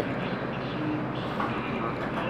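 Steady background noise of a fast-food restaurant dining room, with faint distant voices about a second in.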